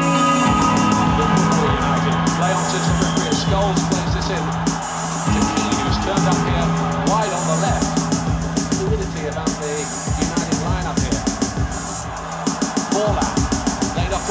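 Live music: electric guitar played through effects pedals over a steady drum beat, with a held low note under the first part.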